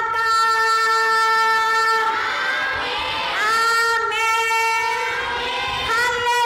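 A woman's voice holding long, loud notes on a single pitch into a microphone, breaking off briefly near the middle and sliding back up into the same note.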